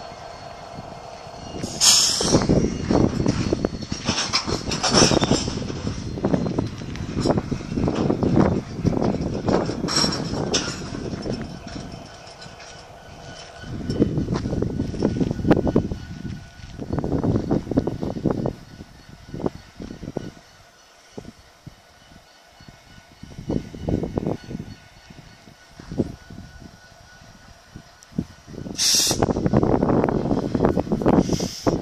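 Freight train of hopper cars rolling slowly on the rails during switching, with irregular bursts of rumbling and clanking that come and go. There is a quieter stretch past the middle.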